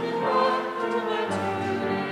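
A choir singing slow, held chords that change about every second.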